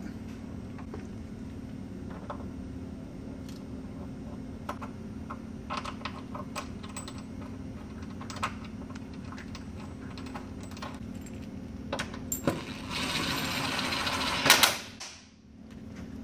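Bolts, washers and nut plates clicking and clinking against a steel subframe as they are fitted by hand, over a steady low shop hum. Near the end comes about two seconds of dense rapid rattling as a bolt is run snug, with a sharp knock just after.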